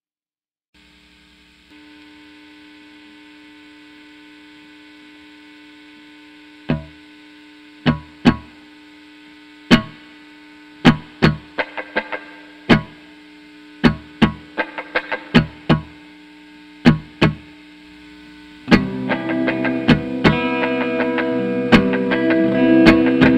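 An electric guitar piece starting after a moment of silence: a steady sustained drone with amplifier hum, joined from about seven seconds in by sharp, irregularly spaced hits. Near the end a loud distorted electric guitar comes in.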